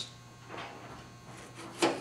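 Knife cutting into an onion on a plastic cutting board, faint, with one sharper click near the end.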